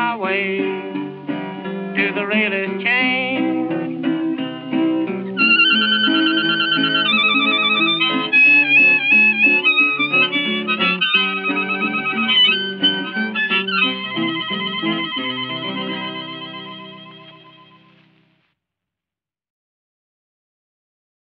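Instrumental close of a 1931 old-time blues recording: picked acoustic guitar, joined about five seconds in by harmonica playing the melody in long held notes. The music fades out a couple of seconds before the end.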